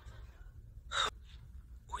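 A single short gasp, a quick breath drawn in, about a second in, over a faint low hum. A voice starts singing right at the end.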